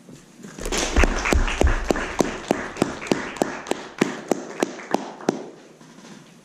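Small audience applauding at the end of a speech, with one person's claps close to the microphone standing out about three times a second. The applause starts about half a second in and dies away near the end.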